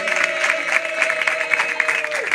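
Clapping from a studio audience and guests, fast and dense, with a single long held note in the music over it that stops near the end.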